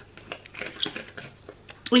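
Faint rustling and light clicks of fabric being handled as a garment is folded.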